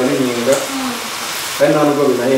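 Food sizzling in a hot frying pan while it is stirred with a wooden spatula, with a voice over it at the start and again near the end.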